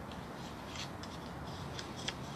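A few faint, light clicks, scattered irregularly over a steady low background hum.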